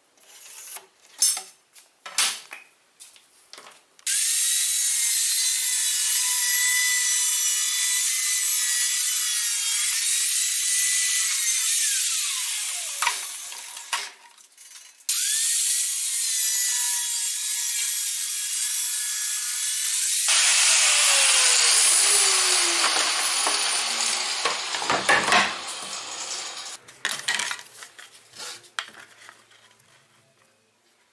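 Angle grinder cutting lengthwise along a 100 mm PVC pipe held in a vise: a loud, steady high whine that winds down about twelve seconds in and starts again a few seconds later. Later comes rougher grinding noise with a falling tone as the disc spins down, framed by a few knocks and clicks at the start and end.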